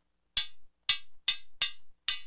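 Synthesized analog hi-hat from Reason's Kong Drum Designer, triggered four times in quick, uneven succession, each hit short and bright with a quick decay. Its Ring control is turned up, giving a more metallic tone.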